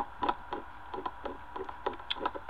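Quick, irregular run of small clicks from a computer mouse's scroll wheel being turned notch by notch, several a second.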